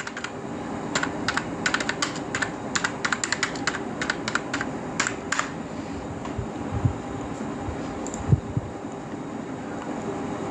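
Typing on a computer keyboard: a quick run of key clicks lasting about four and a half seconds, then it stops. A steady low hum runs underneath, and there are a couple of dull knocks later on.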